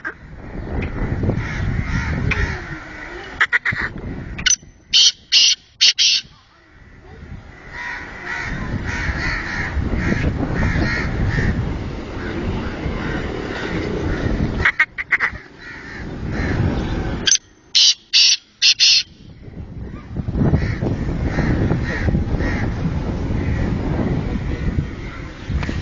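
A caged francolin (teetar) calls twice, about five seconds in and again about seventeen seconds in; each bout is a run of about four loud, shrill notes. A few short clicks come a second or so before each bout, over a steady low rumble.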